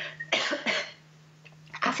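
A woman coughing twice into her hand, two short harsh coughs in quick succession in the first second.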